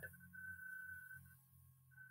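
Near silence between speech: a faint, steady high-pitched tone lasting about a second, over a low background hum.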